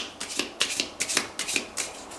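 A deck of Lenormand cards being shuffled by hand: a quick, irregular run of about nine sharp card snaps in two seconds.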